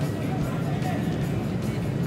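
Background music with a vocal line over a steady low bass.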